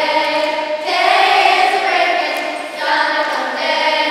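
Children's choir singing, with long held notes that move to a new pitch about a second in and again near the end.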